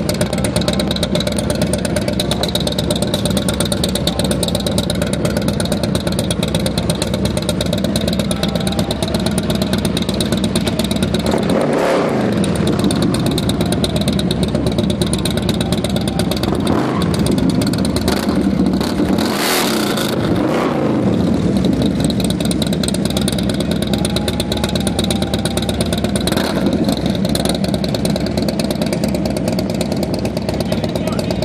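Harley-Davidson V-twin motorcycle engine running steadily. The revs dip and climb again about twelve seconds in, and again around twenty seconds in, with a short hiss near the twenty-second mark.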